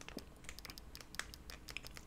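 A few faint, sharp clicks over a low room hum: the buttons of a Fire TV remote being pressed to move through the app menu.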